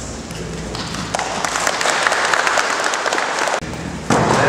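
Audience applauding: a dense patter of clapping that builds about a second in and stops abruptly near the end.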